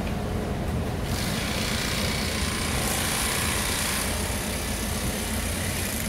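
Steady low drone of sack-filling plant machinery, with a rushing hiss that comes in about a second in and fades shortly before the end.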